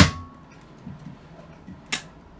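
Pink plastic toy can-badge maker clicking as its top is worked by hand: a sharp click right at the start with a brief ring after it, a few faint ticks, and another sharp click near the end.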